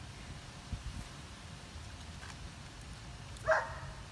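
Faint clicks of a screwdriver prying a plastic ignition coil connector loose, over a low steady rumble. Near the end comes one brief high-pitched vocal sound.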